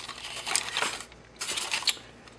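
A small clear plastic bag of hardware parts crinkling as it is handled, in two bouts: one in the first second and another shortly before the end.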